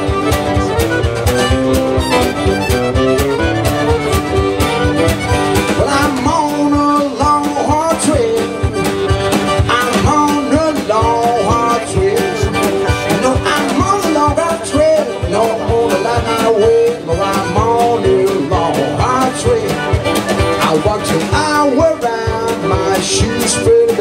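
Live acoustic blues band playing an instrumental passage: strummed acoustic guitar, piano accordion and drums keeping a steady beat, with a melody line weaving over them.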